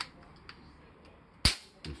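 Crosman 766 multi-pump pneumatic air rifle firing a BB: one sharp report about a second and a half in, after a couple of faint clicks.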